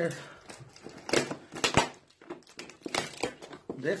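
Paper gift wrapping crinkling and rustling in hands as a present is unwrapped, in a few short crinkles about a second in, near two seconds and around three seconds.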